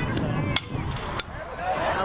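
Metal fastpitch softball bat hitting a pitched ball, one sharp hit about half a second in. A second sharp knock follows a little over a second in.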